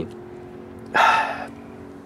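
A man's short, breathy sigh about a second in.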